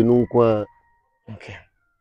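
A man's voice: drawn-out speech syllables in the first half-second or so, then a pause with a faint short rustle.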